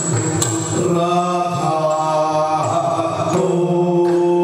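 Yakshagana music: a male singer holds a long sung line over a steady drone, with a few percussion strokes in the first second.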